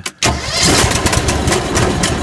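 Bobcat 444 skid-steer's Vanguard 18 hp V-twin engine turned over: a click, then loud, steady engine noise from a quarter second in as the engine spins the belt drive and split jack shaft.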